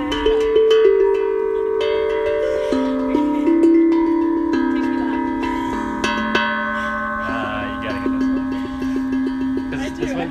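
Tongue drum being played: struck notes ring on and overlap one another, with a quicker run of repeated low notes over the last few seconds.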